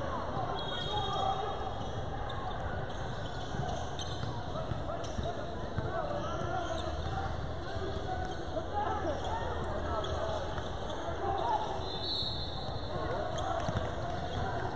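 A basketball being dribbled on a hardwood court during a game, with the overlapping chatter and calls of spectators and players echoing in a large gym.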